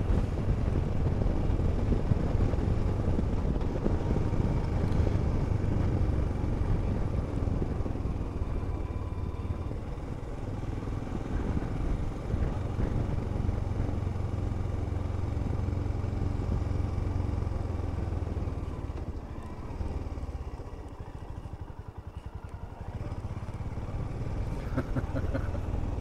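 Royal Enfield Himalayan's single-cylinder engine running steadily while riding along a country lane. The throttle eases off about twenty seconds in, then the engine picks up again near the end.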